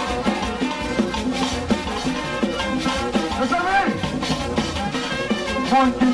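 Live Haitian rara band music: a steady, dense percussion beat under held low wind notes.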